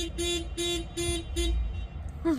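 Rapid buzzy beeping, about four short beeps a second, that stops about one and a half seconds in.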